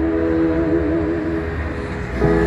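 Amplified female voice holding a long sung note with vibrato over soft, steady instrumental accompaniment. The note fades out about a second and a half in, leaving the accompaniment and a low traffic rumble.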